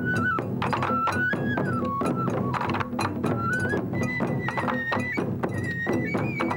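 Japanese taiko ensemble music: drums struck in a steady driving rhythm, with a high melody line stepping between held notes above them.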